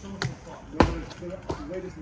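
Feet striking the ground as a person jumps down and lands: a few sharp thuds, the heaviest a little under a second in.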